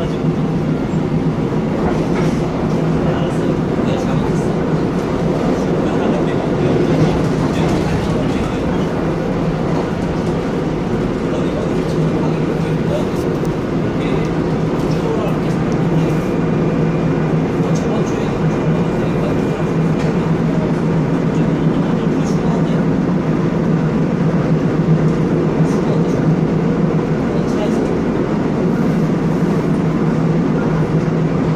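Interior of a Seoul Line 1 electric commuter train running along the line: a steady rumble of wheels on rail and a constant low motor hum, with a few faint clicks.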